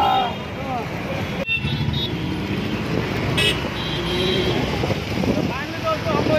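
City road traffic heard from a moving motorcycle: engines running, with short vehicle horn toots, the clearest about three and a half seconds in.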